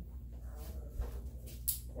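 Steady low hum of a quiet room, with a faint knock about halfway through and a short, sharp hiss near the end.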